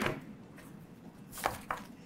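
Quiet room tone broken by two short, sharp clicks about a second and a half in.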